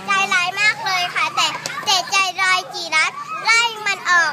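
Young children talking in high-pitched voices, quick and continuous.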